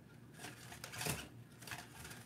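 Faint knocks and scuffs of a 1/24-scale ECX Barrage micro crawler driving into a large monster truck's tire as it tries to push it, three light knocks spread across two seconds.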